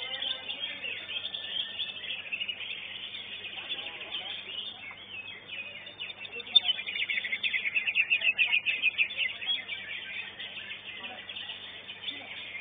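Greater green leafbird (cucak ijo) singing a fast, unbroken run of high chirping notes. The song grows loudest and densest from about six and a half to ten seconds in, over faint crowd voices.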